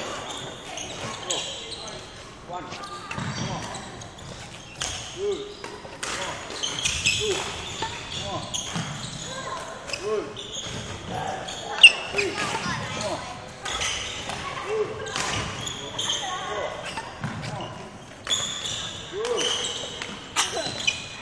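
Footsteps and lunges on a wooden sports-hall floor during badminton footwork drills, with several short shoe squeaks and thuds in an echoing hall. One sharp crack stands out as the loudest sound a little over halfway through.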